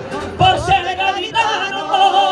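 Men singing in harmony over a strummed acoustic guitar, holding long notes with vibrato. After a brief dip at the start, a new sung phrase comes in about half a second in and another about a second and a half in.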